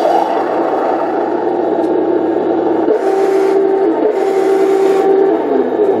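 Heng Long 1/16 Merkava Mk IV RC tank's sound unit playing its simulated engine running through a small onboard speaker, thin with no deep bass. From about three seconds in until near the end, a steady whine joins it as the turret traverses.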